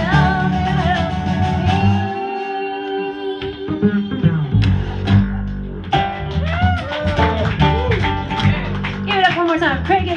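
Lap slide guitar playing an instrumental passage, its notes sliding up and down in pitch, over a piano accompaniment.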